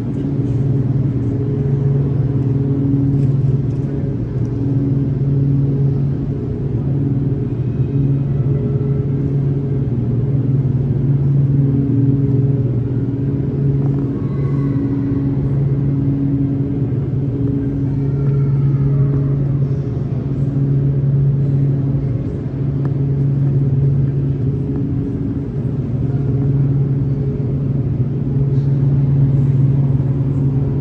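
Rubber-tyred Montreal Metro train running slowly through the station: a loud, steady rumble with a droning hum in several pitches, and faint rising and falling whines about halfway through.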